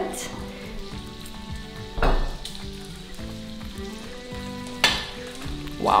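Bacon and food sizzling steadily on a tabletop raclette grill, broken by a knock about two seconds in and a sharp click about five seconds in.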